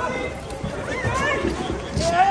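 Crowd of protesters and police in a street scuffle, many raised voices shouting and yelling over one another, some calls rising high.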